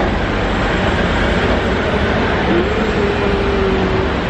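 Loud street traffic noise passing close by. About two and a half seconds in, an engine note rises and then holds steady.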